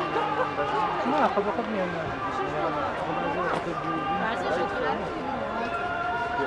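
Several people talking at once: overlapping voices and chatter with no single speaker standing out.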